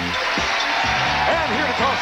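Game show theme music playing, with a man's voice coming in over it about halfway through.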